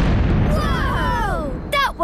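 A cartoon underground explosion: a big bang and a low rumble as the ground shakes, fading over about a second and a half. Several children's voices cry out over it in wails that fall in pitch.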